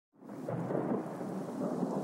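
Intro of a house track: a low, rumbling noise fades in from silence, with no beat or melody yet.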